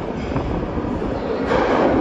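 New York City subway F train approaching through the tunnel: a steady rumble that swells louder about one and a half seconds in.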